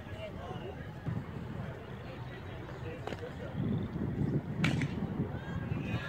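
Indistinct spectator talk, louder in the second half, with a single sharp knock about four and a half seconds in.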